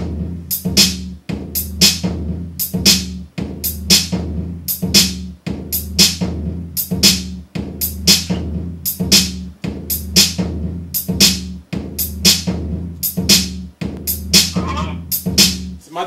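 Unfinished hip hop beat played back: a drum-machine pattern of steady snare and hi-hat hits about twice a second over a sustained bass line. It cuts off suddenly just at the end.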